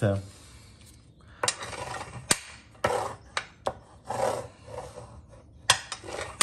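Paper rubbing under hands as a glued sheet of patterned paper is pressed and smoothed onto a cardstock card base: several scratchy passes starting about a second and a half in, with a few sharp taps and clicks.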